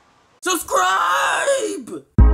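A person's loud, drawn-out wordless yell starting about half a second in and lasting about a second and a half, its pitch falling at the end.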